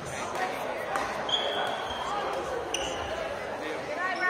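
Badminton rally in a reverberant gym: a few sharp racquet-on-shuttlecock hits, and sneakers squeaking twice on the hardwood floor as players move, over background voices from the surrounding courts.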